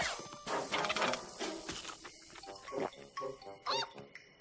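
A cartoon whoosh sound effect with a quickly falling pitch as a character zips off in a streak, over background music. From about halfway through, a cartoon pony voice makes short repeated chicken-like clucking calls.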